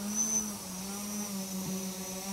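Fortis Airframes Titan tricopter's electric motors and propellers hovering nearby: a steady, even hum with a faint high whine above it, its pitch lifting slightly just after the start.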